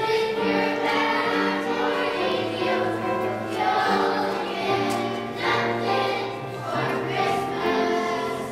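A choir of young children singing a song together, with musical accompaniment.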